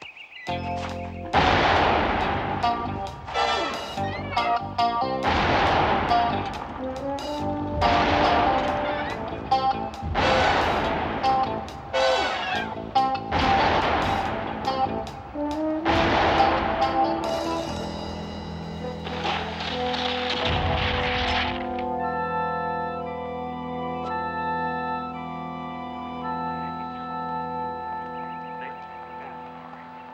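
A run of very loud revolver shots, about one every two to two and a half seconds for the first seventeen seconds or so. Each shot trails off over background music. The gun is fitted with a muzzle attachment, the 'loudener', made to make it louder; after the shooting the music plays on alone and grows quieter near the end.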